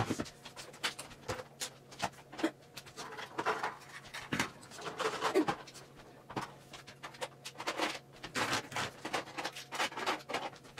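Irregular clicks, light knocks and rustles of small makeup items, acrylic organizers and a makeup bag being picked up and moved off a mirrored vanity tabletop.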